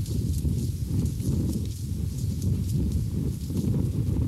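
Wind buffeting the microphone as a steady low rumble, with faint irregular crunches of footsteps in dry sand, roughly two a second.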